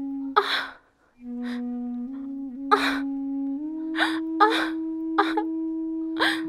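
Slow background music of long, held flute-like notes, with a woman's sharp gasping breaths of pain breaking in five times: once about half a second in, once near three seconds, and three times in the second half.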